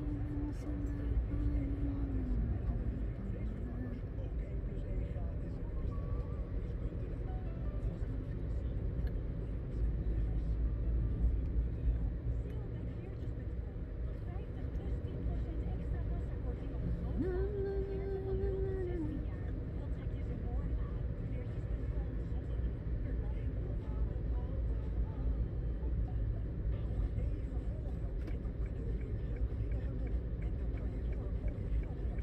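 Car cabin noise while driving: a steady low rumble of engine and tyres on the road, with two brief held tones, one at the very start and one about seventeen seconds in.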